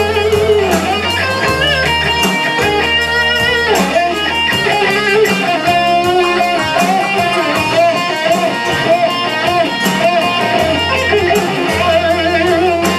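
Live soul band playing: a woman singing lead with vibrato over electric guitars, bass and a steady drum beat.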